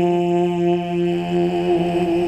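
A male naat reciter singing into a microphone, holding one long, steady note in a devotional chant, over a steady low drone.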